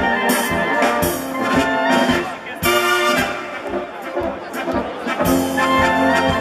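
Brass band playing a polka live: trumpets and trombones carrying the tune over a steady beat. The band plays more softly through the middle and comes back in fuller near the end.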